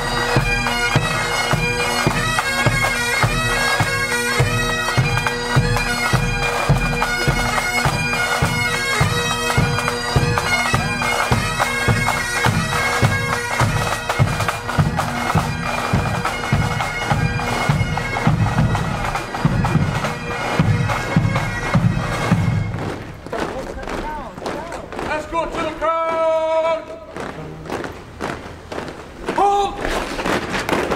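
Pipe band playing a march: bagpipes skirl a melody over their steady drones, with a regular drum beat about twice a second. The music fades away about three quarters of the way through, leaving quieter street sound with a few voices.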